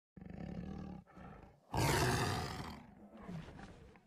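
Tiger sound effect played by Google's 3D AR tiger: a low growl, then a loud roar just under two seconds in that slowly dies away.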